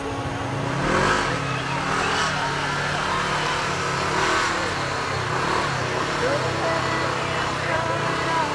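Side-by-side UTV engine revving hard as it races through a mud pit, its pitch climbing and falling with the throttle. Spectators talk nearby.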